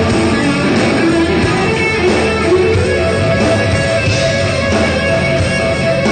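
Live rock band jamming in F sharp: electric guitars, one playing crunchy rhythm, over bass and drums. About halfway through, a guitar holds a long sustained note.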